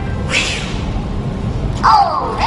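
A short whoosh about half a second in, then near the end a loud, wavering, meow-like cry that falls in pitch.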